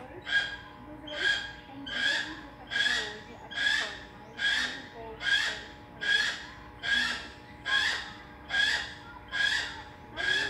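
A bird of prey calling over and over: the same short call repeated evenly, a little more than once a second, about a dozen times.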